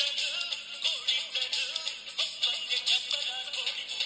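A song with singing, picked up by an ESP32 and RDA5807M FM radio and played through its small round loudspeaker. It sounds thin and tinny, with almost no bass.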